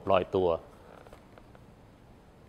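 A man speaking Thai for about half a second, then a pause with only faint room tone.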